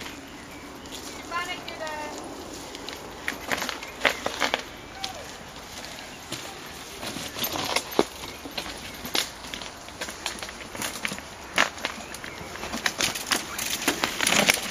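Mountain bike coming down a rocky dirt trail: tyres rolling and crunching over stones and roots, with scattered knocks and clatters as the bike rattles over rock. It gets louder and busier near the end as the bike passes close.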